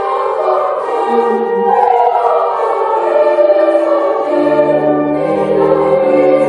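Children's choir singing in parts with held notes; lower steady notes join about four seconds in.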